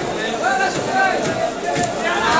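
Several people's voices chattering in the background, with one sharp knock of a knife blade against the wooden chopping block near the end.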